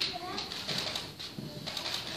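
Faint, indistinct voices murmuring and whispering in a quiet room, in short broken fragments.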